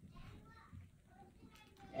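Faint voices in the background, barely above near silence.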